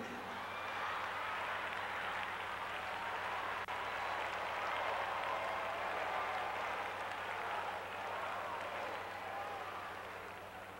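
Congregation applauding, with scattered voices calling out in the crowd; the clapping holds steady and fades near the end.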